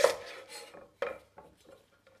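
Back of a kitchen knife knocking a lemongrass stalk against a wooden chopping board to bruise it: a sharp knock at the start and another about a second in, then a fainter tap.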